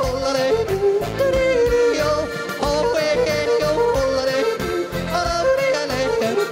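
A man yodeling into a handheld microphone, his voice leaping quickly up and down in pitch, over a folk-music backing with a steady beat.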